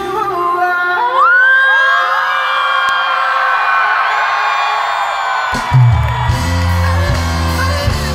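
Live pop band with singer and crowd whoops: the bass and drums drop out for about five and a half seconds while held high notes ring over them, then the full band comes back in.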